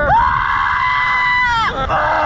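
A long, high-pitched scream held for about a second and a half, wavering just before it breaks off.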